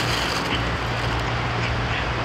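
Steady background noise with a low hum underneath and no distinct events.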